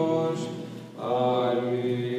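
Male monastic voices chanting an Orthodox hymn in long held notes. The phrase fades to a brief breath pause just before a second in, and the chant resumes on a new sustained chord.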